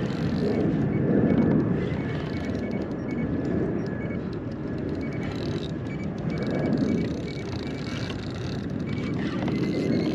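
Wind buffeting the microphone over open water, a low rumble that swells and eases, with faint repeated ticking from the fishing reel as a hooked fish is fought.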